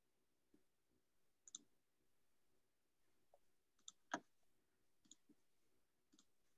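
Faint computer mouse clicks, about six of them spaced irregularly, the loudest a little after four seconds in, over near silence.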